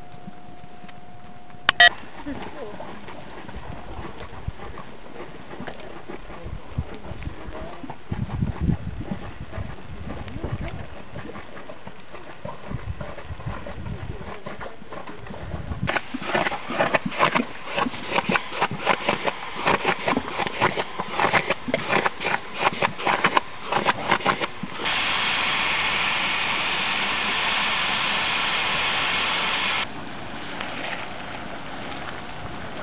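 Geothermal sounds in a Yellowstone thermal area. About halfway through, rapid irregular popping and crackling starts as a mud pool comes into view. About five seconds before the end it gives way to a steady loud hiss, which cuts off suddenly.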